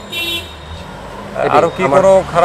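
A brief, high vehicle horn toot from street traffic right at the start, over a low engine rumble that fades within the first second. A man starts speaking about a second and a half in.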